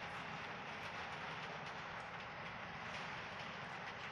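Observatory dome shutter sliding open over a telescope: a steady mechanical rolling noise with a fine rattle.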